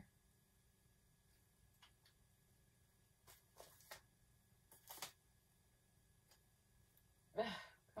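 Mostly near silence: room tone with a few faint, brief rustles and taps as things are handled at a scale, then a woman's short exclamation near the end.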